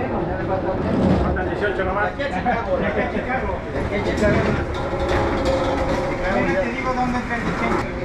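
Indistinct chatter of several overlapping voices, with no one voice standing out, over a steady low rumble.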